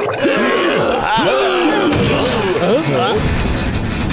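Several cartoon voices grunting and groaning over background music, with a fuller, heavier musical bed from about three seconds in.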